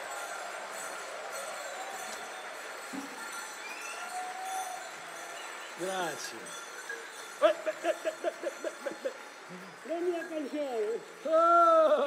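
Low hall murmur, then from about six seconds in loud voices giving a quick run of short repeated calls, followed by rising-and-falling cries, with some jingling.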